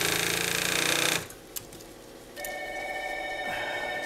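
Mitsubishi class 75 walking-foot industrial sewing machine running steadily, stitching through a thick stack of heavy denim, then stopping about a second in. A little past halfway a steady, multi-pitched ringing tone begins and holds.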